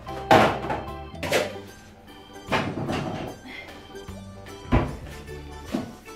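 About five thunks and knocks of kitchen things being set down and moved on a countertop, one a deep thud near the end, over steady background music.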